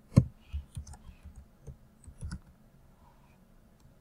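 Computer keyboard being typed on: one sharp, louder click just after the start, then a quick irregular run of key clicks that stops about two and a half seconds in.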